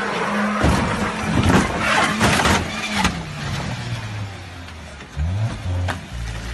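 A small sedan's engine running hard under loud rough noise and several sharp knocks as the car comes down off a tow truck's flatbed. The engine note then drops and settles lower.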